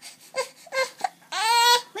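A four-month-old baby fussing: a few short whimpers, then a longer cry about a second and a half in.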